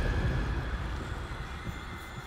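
Low rumbling drone of a film trailer's sound design dying away steadily, with faint high sustained tones above it.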